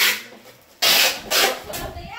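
Packing tape drawn off a handheld tape-gun dispenser and pressed along a cardboard box, in several short, loud strips of tape noise, the loudest and longest about a second in.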